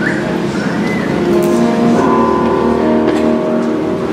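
Live music: a song performed in the hall, with long held notes in chords that change about every second.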